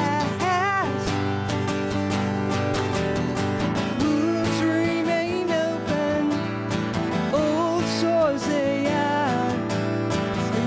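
Steel-string acoustic guitar strummed steadily in a solo song, with a woman's singing voice coming in briefly about half a second in and again for a couple of seconds in the second half.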